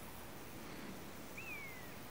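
Faint rural outdoor ambience with a single short bird whistle near the end that rises briefly and then falls.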